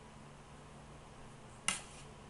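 A single sharp click near the end from a shellac disc record being handled, over faint steady room hum.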